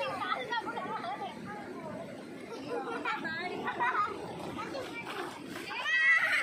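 Voices talking: speech and chatter.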